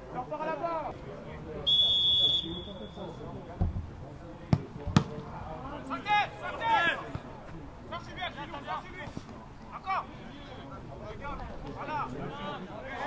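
Referee's whistle blown once, a held note of about a second, followed by a few sharp thuds of a football being kicked, amid players shouting on the pitch.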